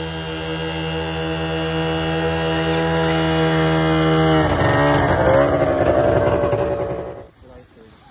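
Snowmobile engine running as the sled approaches, growing steadily louder. About halfway through its pitch wavers and dips, and the sound cuts off abruptly near the end.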